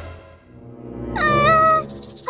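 A cartoon character's short, wordless, whiny whimper about a second in, rising and then wavering, over low background music. A fading noise trails off at the start.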